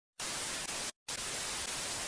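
Television static hiss: a steady white-noise rush that cuts out for a moment about a second in, then starts again.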